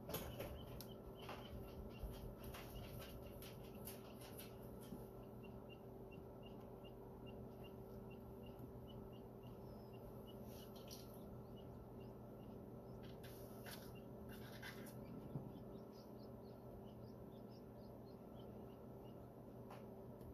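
Faint peeping of newly hatched quail chicks: short, high cheeps repeating a few times a second through most of the clip, over the steady hum of the incubator, with a few soft clicks.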